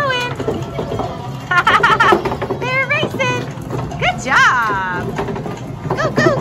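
Children's high voices squealing and calling over music and sound effects from a rolling-ball horse-race arcade game, with a clatter of clicks about a third of the way in.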